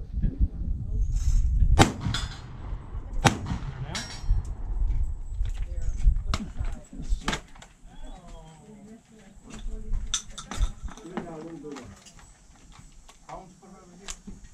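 Several shotgun shots fired a second or more apart at steel knockdown targets, with metallic clanging between them.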